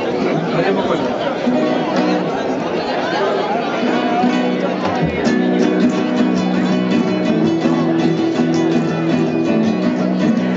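Acoustic guitar strummed in steady chords, with people talking over it.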